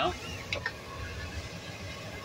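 Rear air-conditioning blower of a 2021 Chevrolet Express conversion van running: a steady rush of air with a low hum underneath. There is a brief faint tap about half a second in.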